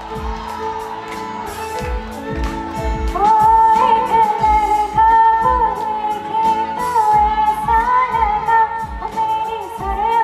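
A woman singing live into a microphone over instrumental accompaniment with a steady beat. The voice comes in about three seconds in, after a short instrumental passage, and the music gets louder as it does.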